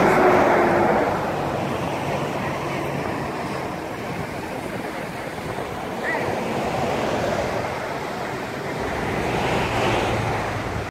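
Matanuska River's fast water rushing steadily, with wind buffeting the microphone.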